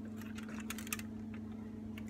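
Fingers working open a cardboard advent calendar door beside foil wrappers: a scatter of small clicks and crackles, over a steady low hum.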